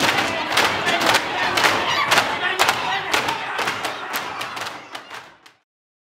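A group of actors banging serving trays on tables and shouting together in a staged prison riot: many irregular bangs over a crowd of yelling voices, fading out about five and a half seconds in.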